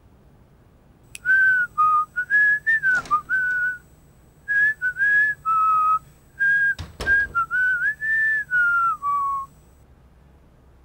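A man whistling a tune in a string of short, clear notes that step up and down, with two sharp knocks partway through.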